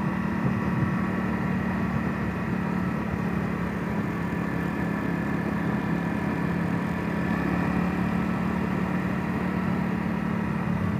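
Honda CRF250L's single-cylinder four-stroke engine running as a steady drone at an even cruising speed, heard on board the bike along with wind and road noise.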